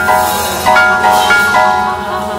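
Live jazz ensemble music: high, bell-like chords struck about six times, unevenly, each ringing on and fading before the next.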